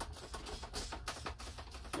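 Plastic trigger spray bottle pumped repeatedly to force Star San sanitizer through a plastic racking cane: a run of trigger clicks with short spritzes. The sprayer is not properly primed, so the spray sputters.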